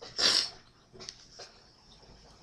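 A person's short, sharp breath, a quick huff of air, about a quarter second in, followed by two faint ticks about a second later.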